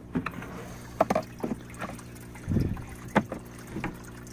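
Plastic lid of a Craftsman 30-gallon storage tote being unlatched and lifted off, a series of clicks and knocks with a heavier thud about two and a half seconds in. A steady low hum runs underneath.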